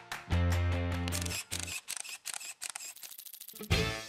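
Electronic intro music sting for the logo: a heavy bass beat with sharp clicks, then a quick run of ticks, and a loud hit near the end that rings out and fades.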